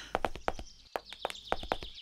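A quick, uneven run of sharp clicks or knocks, about four to five a second, like hoofbeats, over a faint high steady tone.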